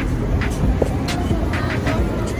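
Steady low rumble of outdoor background noise with a few faint short clicks.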